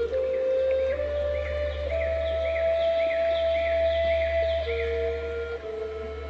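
Slow new-age meditation music: a low sustained drone under long held notes that step up in pitch and drop back near the end. From about a second in, short high chirping sounds repeat about twice a second.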